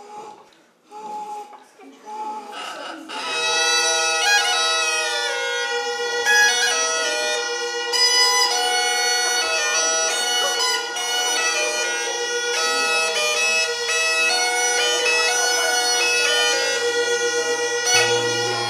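Hungarian goatskin bagpipe (duda) played solo. A few short, broken sounds come first. About three and a half seconds in, the low drone and the chanter's melody start together and play on steadily.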